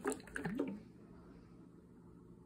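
Thick, slimy marshmallow-root cold infusion shifting and squelching inside a glass jar as the jar is tilted: a short cluster of wet clicks and glugs in the first second, then quiet.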